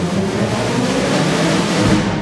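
Orchestra playing a loud passage, its bright upper sound swelling until near the end and then dropping away.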